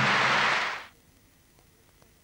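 A burst of hissing noise that fades out within the first second, followed by near silence.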